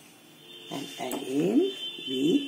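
Several short vocal sounds with gliding, mostly rising pitch, starting about two-thirds of a second in. A faint steady high-pitched whine runs underneath.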